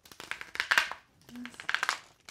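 Rider-Waite tarot cards being shuffled by hand: two quick runs of rapid flicking, the second starting about halfway through.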